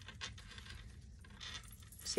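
Faint handling sounds of hands knotting a ribbon around a coin-studded apple: a few light metallic clicks and a brief soft rustle.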